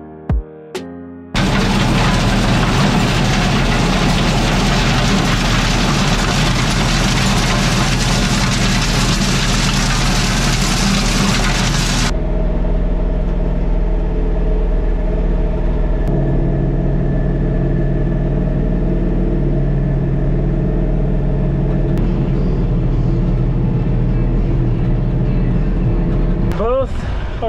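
Kioti DK5310SE diesel tractor running steadily under load while driving a PTO rototiller through the soil. For roughly the first half, a loud, even rush of noise lies over the engine. About halfway through, this changes abruptly to a duller, steady engine drone heard from inside the tractor's cab.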